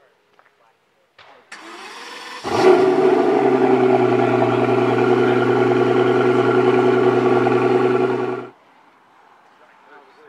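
Pagani Huayra BC's twin-turbo V12 turned over by the starter for about a second, then catching with a sudden loud start and settling into a steady idle. The sound cuts off suddenly about eight and a half seconds in.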